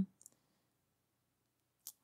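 Near silence in a close-miked voice recording, broken by a few faint mouth clicks: a couple just after the start and one just before the next words.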